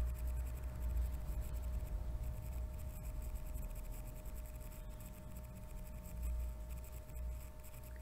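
Room noise picked up by a microphone: a steady low rumble with a faint, constant two-note hum.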